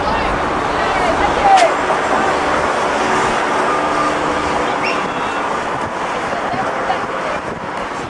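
Steady outdoor city ambience: traffic noise with a few voices in the background.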